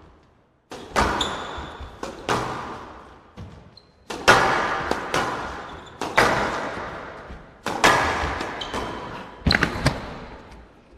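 Squash rally: a squash ball struck by rackets and smacking off the walls about a dozen times, each hit ringing on in the echoing hall, with a quick double hit near the end. A few short, high shoe squeaks on the court floor come between the hits.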